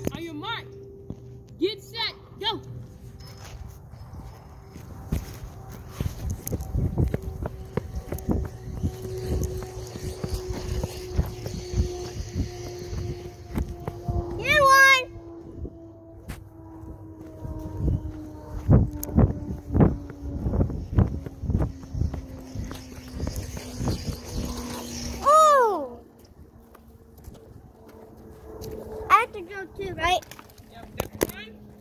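Phone handling noise: repeated knocks and rubbing on the microphone as the phone is moved about. Three short high-pitched squeals, like a child's, come about halfway through, near the end, and just before the close. A faint thin steady tone sinks slowly in pitch underneath.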